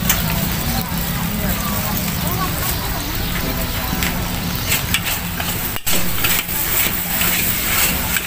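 Two metal spatulas scraping and clanking against a steel wok as noodles are stir-fried and sizzle, over a steady low rumble. The sharp clanks come in the second half.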